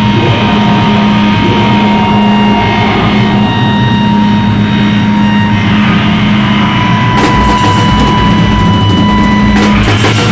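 Live rock band playing loudly on distorted electric guitars, bass and drum kit. Held notes ring out, then drums with cymbal crashes come in hard about seven seconds in.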